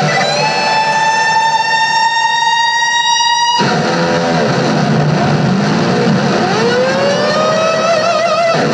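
Electric guitar solo on a V-shaped electric guitar: one long held note that cuts off sharply about three and a half seconds in, then quicker notes with pitch swoops rising and falling.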